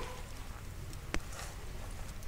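A pause between speech: faint steady low hum and outdoor background hiss, broken by a single sharp click just after a second in.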